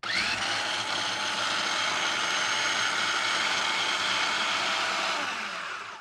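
Food processor motor switching on abruptly and running steadily, pureeing a thick mix of fried peanuts, garlic and dried chiles in oil into a smooth salsa; it winds down near the end.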